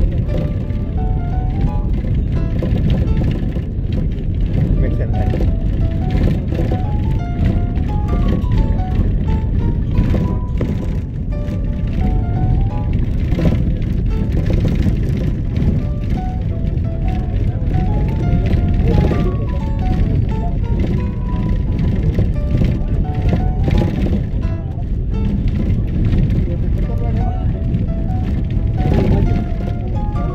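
A song with a stepping melody plays over the steady low rumble of a car driving.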